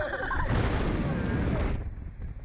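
Wind rushing over the microphone of the camera mounted on a SlingShot reverse-bungee ride capsule, a loud burst about half a second in that lasts just over a second as the capsule swings through a flip, after a rider's shout.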